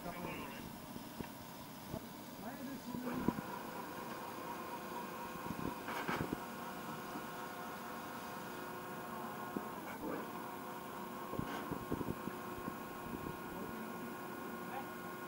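Rescue boat davit's motor running with a steady whine from a few seconds in, as the boat is swung out and hung over the side, with a few sharp knocks.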